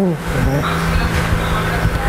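A motor vehicle's engine and road noise: a steady low hum under a wide hiss.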